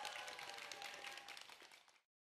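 Faint studio-audience applause with a held cheer after the song ends, fading out near the end.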